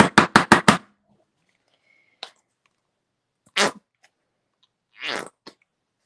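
Plastic acrylic-paint squeeze bottle sputtering as paint and trapped air are forced out: a quick run of about six raspy spurts at the start, then a few single spurts later.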